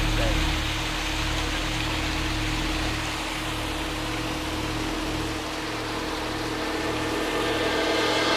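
Steady rush of falling water from a small garden waterfall and stream, over a low steady hum.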